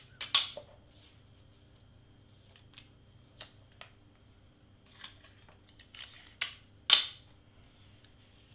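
Large cardstock pieces rustling and tapping as they are shifted and pressed flat on a cutting mat, with a short, sharp rasp of clear tape being pulled and torn about seven seconds in, the loudest sound.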